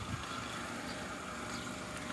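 A steady low mechanical hum, like a distant engine or machine running, with a faint even tone over it.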